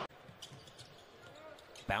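Quiet arena court sound after an abrupt drop in level: a basketball bouncing faintly on the hardwood floor.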